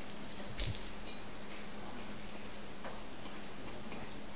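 A few light clicks and knocks, one with a short metallic clink about a second in, over a steady low hum.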